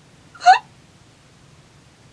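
A woman's single short, sharp gasp of shock, a quick voiced catch of breath with a rising pitch, about half a second in.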